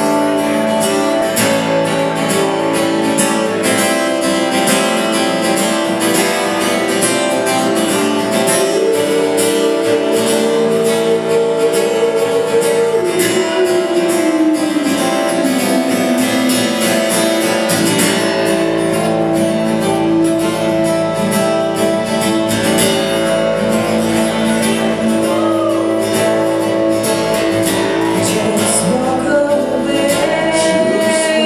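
Live acoustic guitar being strummed, with a woman singing over it.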